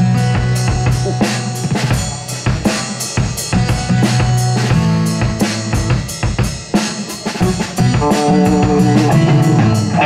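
Live rock band playing loud: a drum kit keeping a steady beat on bass drum and snare with cymbals, over sustained bass notes, with electric guitar and keyboard. A melodic line comes up more strongly over the last couple of seconds.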